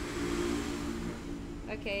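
Low voices and a rustle close to the microphone, ending with a woman saying "okay".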